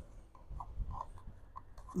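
Soft scuffing and rubbing with a low rumble, the noise of someone walking outdoors while filming on a handheld phone: footsteps and clothing or handling noise on the microphone.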